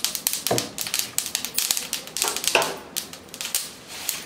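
Flax seeds crackling and popping as they roast in a nonstick pan: a rapid, uneven scatter of sharp clicks. A spatula scrapes through the seeds a few times.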